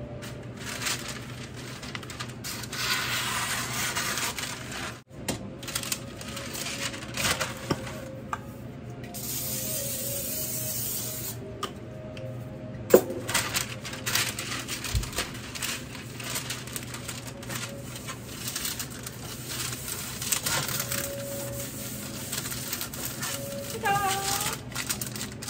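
An aerosol can of cooking spray hissing for about three seconds as a baking sheet is greased, ending abruptly, amid rustling of parchment paper and clatter of a metal baking sheet, with one sharp clack just after the spray stops.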